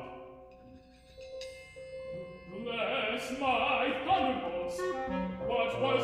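Live chamber opera accompaniment of piano and percussion. The music fades to a quiet moment about a second in, held high notes follow, and singing voices come back in about two and a half seconds in.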